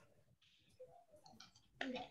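Near silence with a few faint, short clicks about a second in; a woman's voice starts again near the end.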